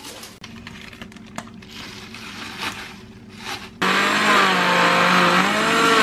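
Electric jug blender switched on about four seconds in and running loud, blending spinach and kale. Its motor pitch dips and recovers while it runs. Before that, only soft handling noise.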